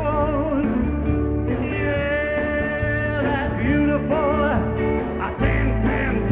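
Live band playing a country-style song, with accordion, electric guitar, keyboard and bass.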